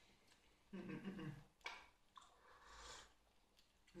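Near silence with faint mouth sounds of a man chewing chocolate, a short low hum about a second in and a soft rustle of breath or wrapper near the end.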